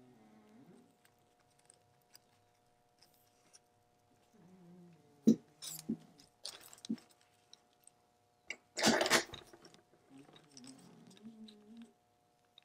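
Small handling sounds of watch-hand removal: a few light clicks and taps, then a louder crinkle of a thin plastic bag being laid over the dial about nine seconds in.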